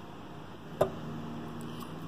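A single sharp click a little under a second in, over a faint steady hum.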